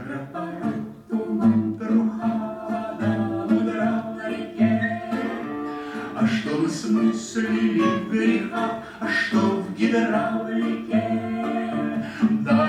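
A man and a woman singing a song together as a duet to an acoustic guitar accompaniment.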